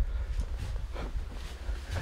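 Low rumble of microphone handling and movement on a wooden floor, with a few faint soft breaths.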